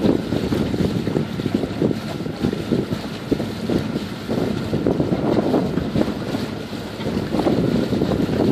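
Wind buffeting the microphone on a sailboat's deck: a loud, irregular, gusting rumble.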